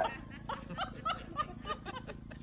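Light laughter: a string of short chuckles, about three or four a second.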